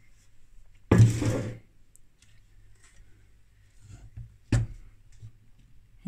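Bench power supply's bare metal chassis being handled on a workbench: a short scraping rustle about a second in, then a single sharp knock.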